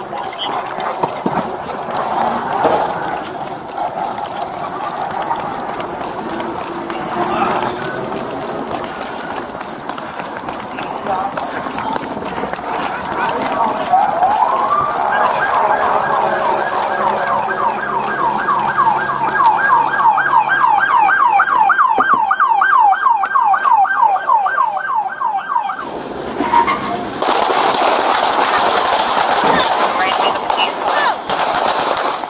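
Police car siren on yelp, a fast rising-and-falling wail about four times a second, starting about halfway through and cutting off suddenly near the end. A loud burst of noise follows just after.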